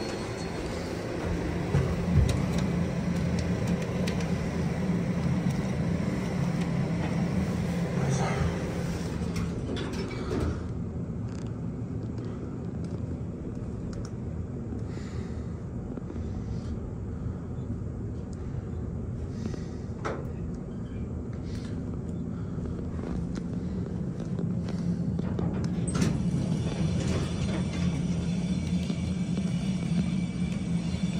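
Traction elevator car riding between floors: a steady low hum and rumble, with a few clicks and knocks from the doors and equipment, the clearest about a third of the way in and about two thirds in.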